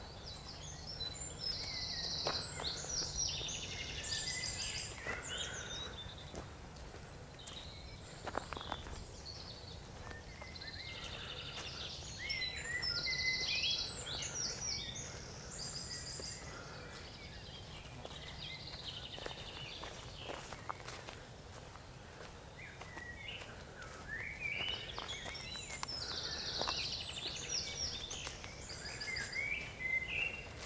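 A songbird singing a complex song of fast trills and chirps three times, each song a few seconds long and about ten seconds apart. Footsteps through grass can be heard underneath.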